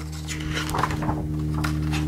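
Paper rustling as a page of a hardcover picture book is turned, over a steady low background hum.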